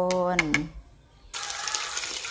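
A spoonful of minced pork and banana blossom fish-cake mixture sizzling in hot oil in a pan. The sizzle starts suddenly about a second and a half in.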